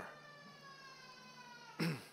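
A faint, high-pitched, drawn-out whine that slowly falls in pitch for over a second, over a low steady hum; near the end a man clears his throat.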